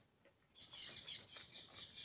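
Faint, rapid bird chirping that starts about half a second in and keeps going, with a few soft clicks of chewing.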